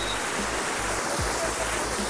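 Steady rush of water cascading down the stepped rock terraces of Dunn's River Falls.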